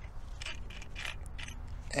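Quiet pause: faint scattered clicks and rustles over a low steady rumble.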